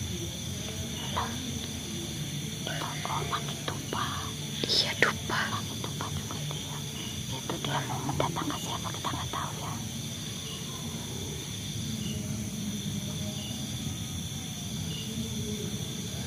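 Night insects chirping steadily at several high pitches. In the middle stretch there is low muttering or whispering and a few short rustles.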